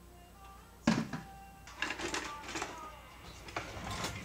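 Handheld electric mixer being handled as its beaters are fitted in: a sharp click about a second in, then a run of lighter clicks and knocks, over faint background music.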